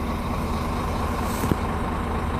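Truck's diesel engine idling, a steady low hum heard from inside the cab, with one short click about a second and a half in.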